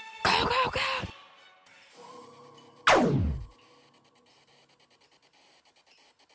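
A loud, harsh vocal cry in two pulses about half a second in. About three seconds in comes a single sharply falling blaster-shot sound effect. Soft musical tones and faint ticking lie around them.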